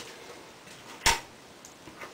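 A single snip of scissors closing through a lock of wet hair, about a second in.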